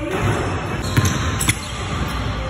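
Basketball bouncing on a hardwood gym floor: two sharp bounces, about a second in and again half a second later.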